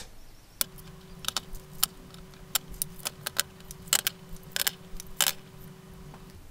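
Small blocks being set down on a tabletop one after another: a quick, irregular run of sharp clicks and taps, over a steady faint hum that starts and stops with them.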